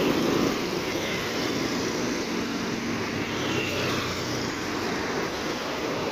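Road traffic passing close by on a city street: a motorcycle goes by at the start, then a steady mix of engine hum and tyre noise.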